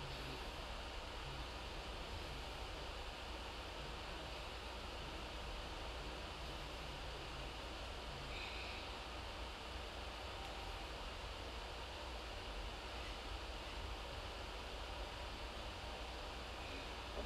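Steady background hiss with a low hum and no distinct events: the room tone of a phone microphone in a quiet room.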